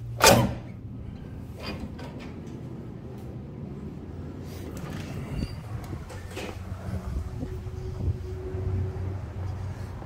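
A glass entrance door's metal push bar clunks loudly as it is pushed open. After it comes a steady low rumble of street traffic, with a few scattered knocks.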